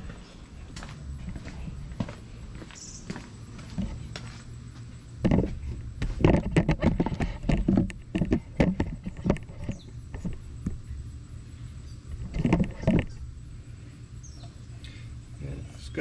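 Footsteps and short knocks of parts being handled, in a dense run through the middle and again briefly near the end, over a steady low hum.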